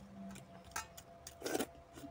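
Eating by hand from steel bowls: a few light clicks, then a louder short mouth sound about one and a half seconds in, as a piece of curry-soaked potato is brought to the mouth.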